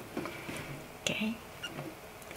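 Faint handling sounds: soft rustles and small clicks as a rose on its stem is slid across and lifted off a metal gift tin's lid.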